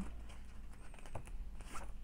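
Sheets of paper being handled and moved over a cutting mat, with faint rustling and a light tap about a second in.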